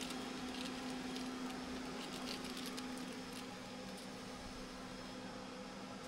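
Steady low hum of equipment in a projection room, with faint scattered clicks and rustles of hands working a braided cable and cable knife.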